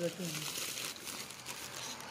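Thin clear plastic bag crinkling as fingers handle it: a dense run of crackles that tails off slightly toward the end.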